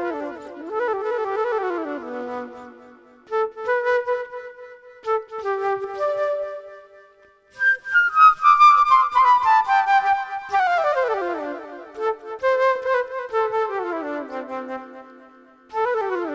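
Solo flute improvising freely: several phrases of quick notes broken by short pauses, with long falling runs about halfway through and again near the end.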